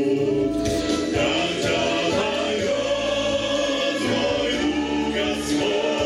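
Male vocal group singing together in harmony into microphones.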